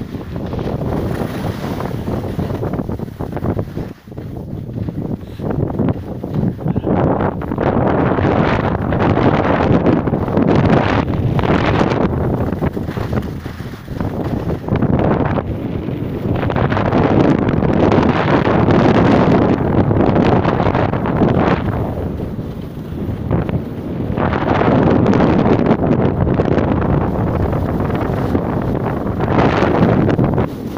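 Wind rushing over the microphone of a skier's camera during a downhill run, mixed with the rush of skis on packed snow. It swells and eases in long surges lasting several seconds.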